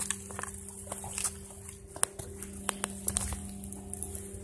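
Footsteps on mud, rocks and dry grass, with scattered irregular clicks and snaps, over a steady low hum.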